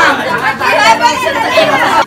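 Several people talking at once in a group, overlapping voices and chatter.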